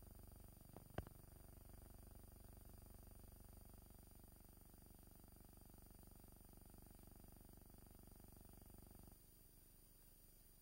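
Near silence on a missing soundtrack: a faint steady low hum, with a single sharp click about a second in.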